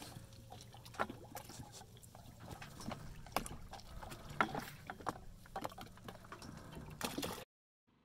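Water lapping and splashing against a sailboat's hull, with many irregular small slaps and knocks over a low steady rumble. It cuts off suddenly near the end.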